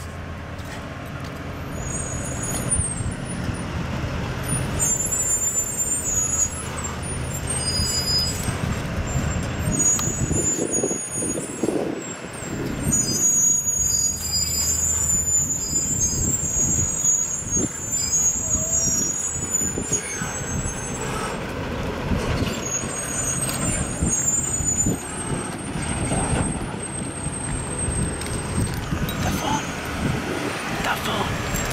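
Tow truck engine running as the truck moves off with a towed vehicle: a steady low drone for about the first ten seconds, then a rougher, uneven rumble with traffic. Thin high squeals come and go through the middle.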